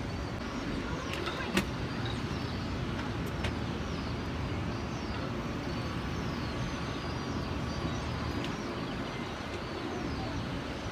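Steady distant rumble heard from high above a city, with a sharp click about a second and a half in and a couple of fainter clicks later.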